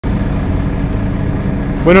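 An engine running with a steady low hum; a man's voice starts just before the end.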